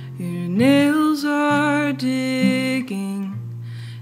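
Slow song: a woman singing long held notes over an acoustic guitar.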